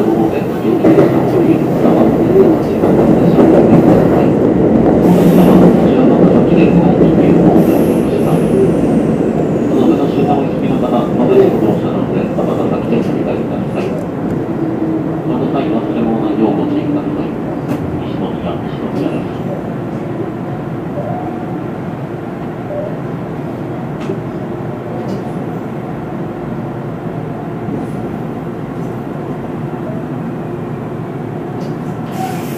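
Electric commuter train running on rails, heard from inside the cab. Wheel and running noise is loud at first, then dies down steadily as the train slows on its approach to a station.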